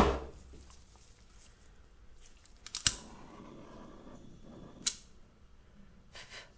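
Three sharp clicks, at the start, about three seconds in and near five seconds, with a faint hiss between the last two.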